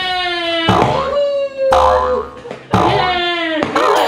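A person's voice making long, drawn-out calls that slide down in pitch, about one a second.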